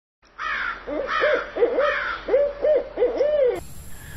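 An owl hooting: a quick run of about a dozen short hoots, each rising and falling in pitch, with fainter higher calls above them, starting just after the beginning and stopping about half a second before the end.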